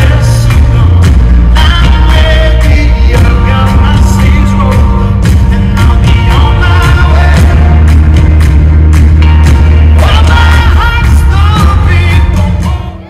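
Live pop performance: a man singing into a microphone over a band with strong bass and regular drum hits.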